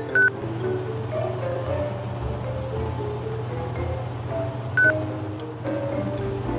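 Light background music with a wandering melody, broken by two short high beeps, one right at the start and one about five seconds in. The beeps are a ceiling cassette air conditioner acknowledging commands from its remote control.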